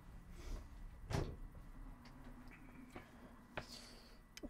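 Faint knocks and clicks of a pair of pliers being picked up and handled at a workbench, with one sharper click about a second in.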